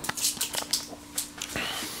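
A dog whining once, short and high, near the end, over scattered small clicks and taps.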